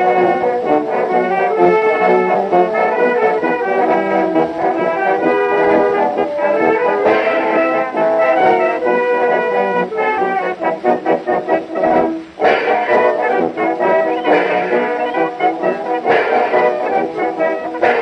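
Brass band playing a Russian imperial military march, with a brief break in the music about twelve seconds in.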